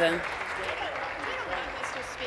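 Legislature members applauding: steady clapping from many hands.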